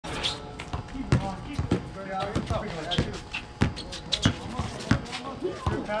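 A basketball bouncing several times at irregular intervals on an outdoor court during play, with players' voices shouting in between.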